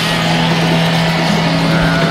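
Electric sheep-shearing machine running with a steady, even hum.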